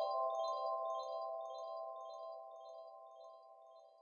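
Tail of a closing music jingle: a held chord rings down while short, high, chime-like notes twinkle above it several times a second, the whole fading away steadily.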